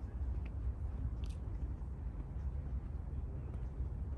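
Outdoor background rumble in a city park, low and steady, with a couple of faint short high chirps about half a second and a second and a half in.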